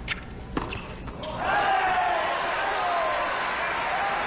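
Two sharp knocks of the tennis ball in the first second, then a loud crowd cheering with shouts from about a second and a half in, as the point ends.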